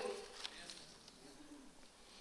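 A pause in speech: a man's voice dies away in a large reverberant hall, leaving faint room tone with a soft, low murmur-like sound in the middle.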